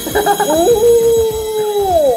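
A person's long, drawn-out "ooh" of admiration, held on one pitch for over a second and falling away at the end.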